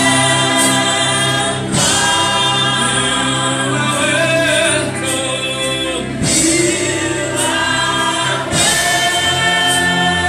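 A woman singing a gospel worship song through a microphone and PA speakers, in phrases of long held notes a few seconds each, over a steady low backing.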